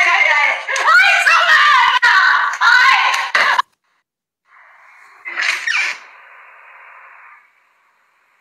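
A high-pitched voice screaming and shrieking with wildly bending pitch, cut off abruptly about three and a half seconds in. After that comes a faint hiss with one short, louder burst of noise in the middle.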